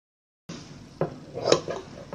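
Steel scissors snipping thread at a sewing machine's needle plate: two sharp metallic clicks about a second and a second and a half in, over a low hiss that starts after half a second of dead silence.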